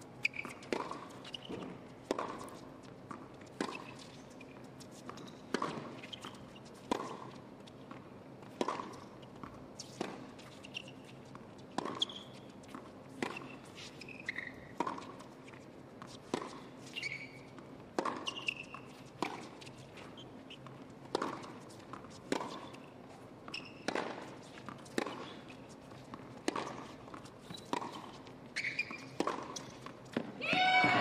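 Tennis rally on a hard court: racket strikes and ball bounces about once a second, sustained through a long exchange, with a few short high shoe squeaks.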